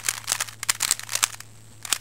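Plastic 3x3 Rubik's cube faces being turned quickly by hand through a repeated R U R' U' sequence: a rapid run of clicks and clacks that thins out about three-quarters of the way through, with one last click near the end.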